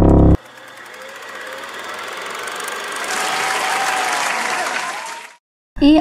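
A burst of loud music cuts off, then crowd applause with faint cheering swells slowly for about five seconds and fades out.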